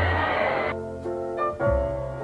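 Background piano music with sustained chords and deep bass notes. Crowd noise from the street lies under it and cuts off abruptly about three quarters of a second in, leaving the piano alone.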